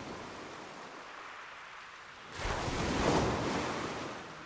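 Rushing, surf-like noise of an intro sound effect, steady at first, then a louder swell like a wave breaking about two and a half seconds in that eases off.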